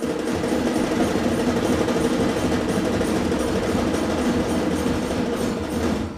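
An audience applauding steadily: a dense wash of many hands clapping.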